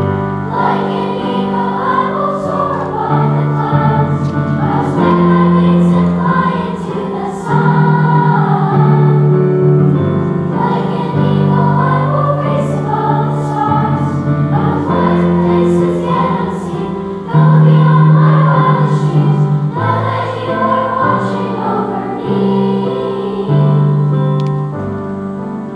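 Children's choir singing, with held low accompaniment notes under the voices.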